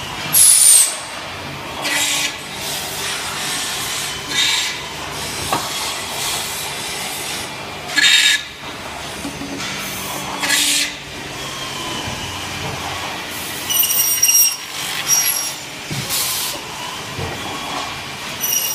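Automated window-profile machining centre running: a steady mechanical noise broken by about seven short, loud hissing bursts, with a high whine of several steady tones near the end.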